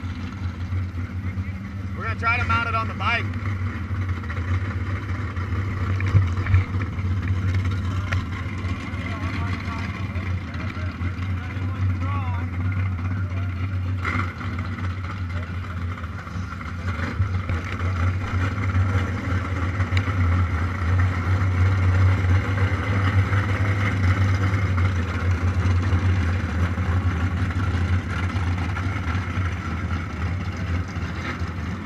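Motorcycle engine idling steadily, heard close up from a camera mounted on the bike. Brief voices come in about two seconds in.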